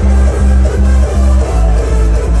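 Loud electronic dance music from a live DJ set over a club sound system, with a heavy pulsing bass line that comes in right as it begins.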